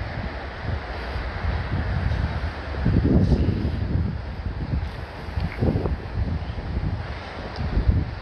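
Wind buffeting the microphone: an uneven low rumble that swells about three seconds in and again near six seconds.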